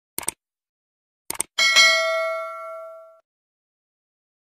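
Subscribe-button animation sound effect: two quick mouse clicks, two more about a second later, then a bell ding that rings out for about a second and a half.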